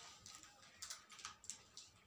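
Faint rustling and small clicks of fabric being pushed and gathered by hand as a rope on a safety pin is worked through a sleeve casing.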